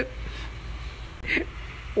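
A pause in speech: faint room noise with a steady low hum, and one brief short sound a little past halfway.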